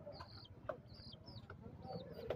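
Birds calling faintly: a string of short, high chirps with softer, lower calls beneath them and a couple of sharp clicks.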